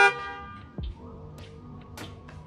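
A car horn's single loud honk, cutting off just after the start with a short ring. Background music follows, with a low thump a little under a second in.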